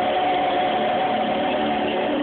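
Live singing with backing music: voices holding one long, steady note.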